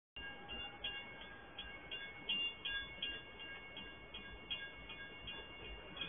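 Level-crossing warning alarm ringing faintly: a steady chiming tone with short repeated strikes about three times a second.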